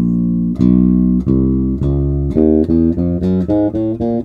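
Five-string Yamaha electric bass through an Ampeg PF-350 head and PF-115HE cabinet, playing a slap-technique fretting exercise. Single notes with sharp attacks step from fret to fret, each ringing about half a second, then come faster and shorter from a little past halfway.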